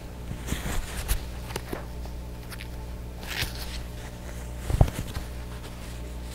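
Cloth face mask rustling and being handled close to a clip-on microphone as it is pulled on and adjusted over the face and ears: scattered soft clicks and rustles, with a short knock about five seconds in, over a steady low hum.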